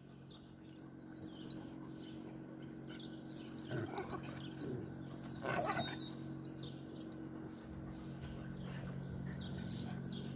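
Dogs play-wrestling, with a few brief vocal sounds around four seconds in and again about a second and a half later, over a steady low hum.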